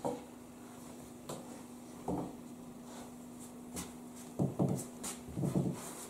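A wooden stick stirring bread dough in a large aluminium pot: a few dull knocks and scrapes against the pot, coming more often in the last two seconds.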